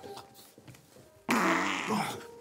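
A man makes a sudden loud, rough, rasping noise with his mouth down at his plate, starting a little past halfway and lasting under a second.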